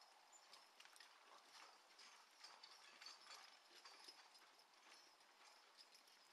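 Faint, distant sound of a team of Percheron draft horses pulling an Oliver 23A sulky plow: light, irregular clinks and clops from hooves, harness and plow.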